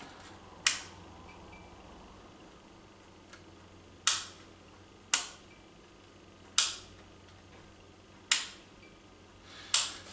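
Desk lamp's switch clicked six times, a few seconds apart, turning a plug-in PL compact fluorescent tube on and off while it is being tested.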